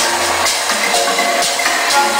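House music from a DJ set playing loud through a club sound system, with a steady beat about two strokes a second.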